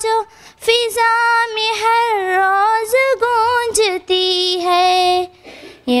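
A girl's solo voice singing an Urdu hamd (a song in praise of God), holding long, wavering notes in several phrases. There is a brief pause near the end before the next line begins.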